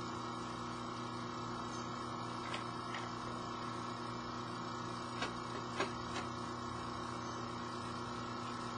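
A steady mechanical hum with a few faint clicks of handling, about two and a half, three, five and six seconds in.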